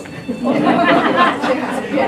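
Several people talking at once, starting about half a second in.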